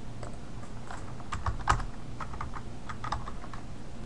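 Typing on a computer keyboard: a quick, irregular run of a dozen or so keystrokes as a short entry is typed in.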